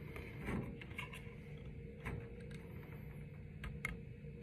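Faint, scattered small clicks and taps of a cane reed and metal ligature being handled and slid into place on a bass clarinet mouthpiece, with a couple of sharper clicks near the end.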